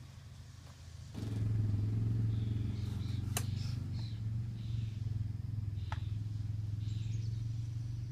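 A motor engine running steadily, its low hum growing louder about a second in, with two sharp clicks.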